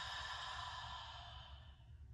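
A woman's long open-mouthed exhale, a breathy sigh that fades out about three quarters of the way through. It is a deep release breath, letting go of a full inhale held at the top.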